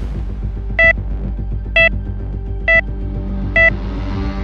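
Short, evenly spaced electronic beeps of a patient heart monitor, four in all, about one every 0.9 seconds, over a low, throbbing music bed.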